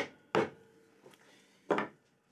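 Bench holdfast being knocked down to clamp a board to a wooden workbench: three sharp wooden knocks, two close together at the start and a third after a longer pause near the end.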